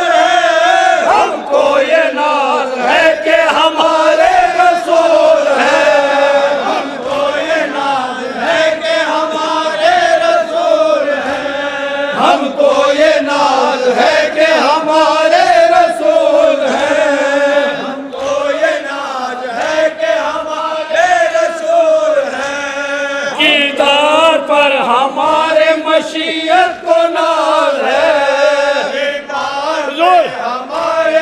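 A group of men chanting a noha, a Shia lament, together into microphones: one continuous melodic line of voices that rises and falls without a break.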